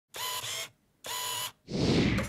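Channel intro sound effect: two short electronic tones, each about half a second long with a brief silence between, then a whoosh that swells in near the end.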